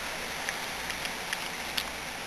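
Steady background hiss with a few faint, light plastic clicks from an Eastsheen 5x5x5 puzzle cube as its middle edge piece is pried out of the turned top layer.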